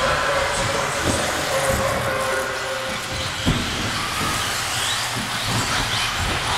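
1/10-scale 4WD electric RC buggies racing: a steady din of motor whine and tyre noise, with faint rising and falling whines as the cars speed up and slow down. A single sharp knock about three and a half seconds in.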